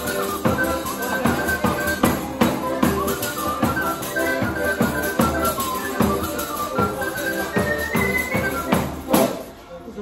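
Lively folk tune played live on accordion and tambourine, with a high, quick melody over steady tambourine beats. The tune ends on a final stroke a little after nine seconds in.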